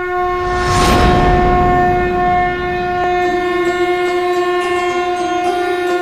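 Conch shell (shankh) blown in one long, steady, horn-like note, with a whooshing swell about a second in.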